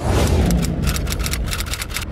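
An editing transition sound effect: a loud burst of noise starts suddenly at the cut and flutters rapidly, about nine times a second, through its second half.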